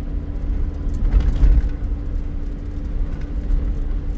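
Inside the cab of a Toyota moving slowly along a dirt road, likely in second gear: the engine runs with a steady hum over a low, uneven rumble from the rough road.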